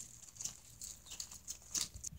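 Faint, scattered crunching of footsteps on loose gravel, a few light crackles spread over the two seconds.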